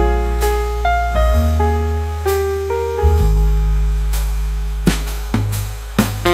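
Slow instrumental jazz ballad: a piano plays chords and a melody over long, held upright-bass notes, with a few light drum-kit strokes.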